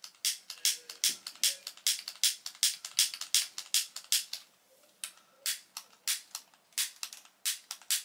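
Green utility lighter's trigger clicked over and over, about three or four sharp clicks a second with a short pause a little past the middle, without getting the candle lit: the lighter looks to be finished.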